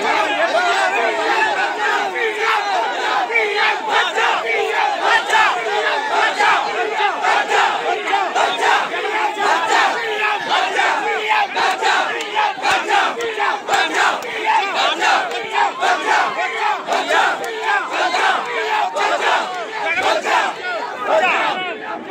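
A large crowd of men shouting and yelling together at close range, loud and continuous, with frequent sharp knocks mixed in among the voices.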